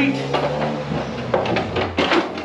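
Hard plastic knocking and scraping as a moulded plastic speaker pod is pushed into place on a golf cart's plastic dash panel, a few separate knocks over a steady low hum.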